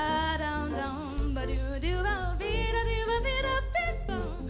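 Female jazz vocalist singing into a microphone, holding and bending notes across a sung phrase, backed by a jazz combo with an electric bass line that comes in stronger about a second in.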